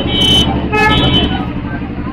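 A vehicle horn sounds twice in short blasts, each about half a second long, over the steady low rumble of an idling engine.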